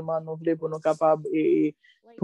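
Speech only: a person talking, with a drawn-out hesitation sound and a short pause near the end.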